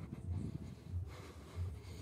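Footsteps of a person walking at a steady pace on a paved path, heard as low thuds about three times in two seconds.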